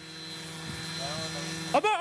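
Small unmanned helicopter's engine and rotor running with a steady hum, growing louder as the craft lifts and tips just after the computer has taken over its controls. A man shouts "Abort" near the end.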